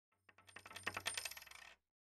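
Quiet intro sound effect: a run of small clinks that start sparse and come faster and closer together, swelling and then fading out just before two seconds.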